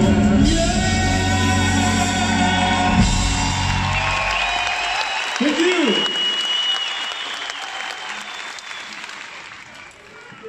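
A live band's song ends on a held final chord: the bass and drums drop out about four and a half seconds in. Audience applause and cheering follow and slowly fade.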